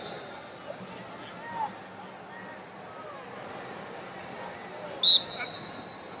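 Indistinct chatter of a large arena crowd, then one loud, sharp referee's whistle blast about five seconds in, its high tone trailing on faintly.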